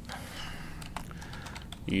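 Typing on a computer keyboard: a few irregular keystrokes.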